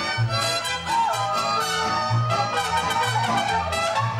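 Mariachi music: an instrumental passage between sung verses, with trumpets and violins over a steady, pulsing bass beat.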